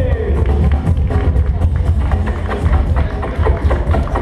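Loud music played over a venue sound system, with a heavy, steady bass and sharp drum hits.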